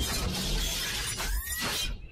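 Intro logo sound effect: a sustained burst of crashing, shattering noise over a deep bass rumble, with faint sweeping tones, cutting off shortly before the end.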